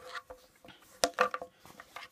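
A few light clicks and knocks from handling a pair of Nikon Monarch 5 10x42 binoculars and their neck strap, the two sharpest close together about halfway through.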